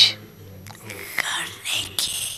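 A pause in a woman's slow speech: a word ends in a hiss, then faint breathy sounds into the microphone over a low steady hum.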